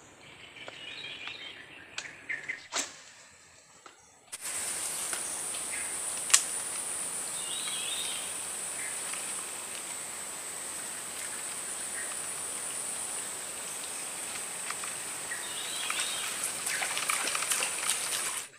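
Swamp ambience: a few bird chirps and light clicks, then from about four seconds in a steady high-pitched drone with a hiss, which cuts off abruptly at the end. Bird chirps sound now and then over the drone.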